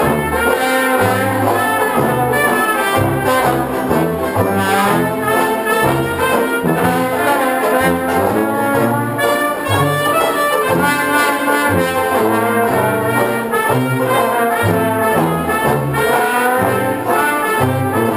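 A banjo band playing an instrumental chorus of an old popular tune: strummed banjos with brass carrying the melody over a low, rhythmic bass line.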